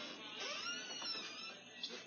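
Faint voices in a small room, with no clear words.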